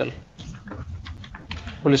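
Computer keyboard typing, keys clicking in quick irregular strokes as a dictated court order is taken down, over a low room hum; a man's voice resumes near the end.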